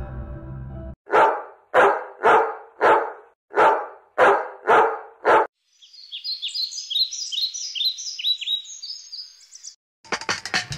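A dog barking eight times in a steady series, a little under two barks a second. After the barking, about four seconds of rapid, high-pitched chirping.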